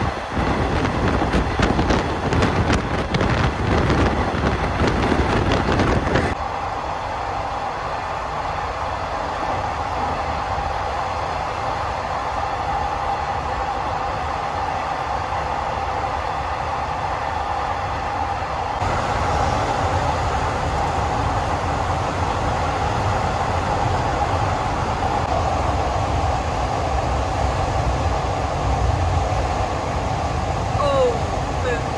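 Passenger train running at speed: loud wind and clattering wheel-on-rail noise through an open carriage window, then, after about six seconds, a steadier and quieter rumble with a faint steady whine as heard from inside the carriage.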